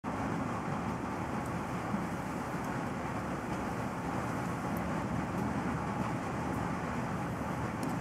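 Steady background noise, a low rumble and hiss with no distinct events apart from one faint click about two seconds in.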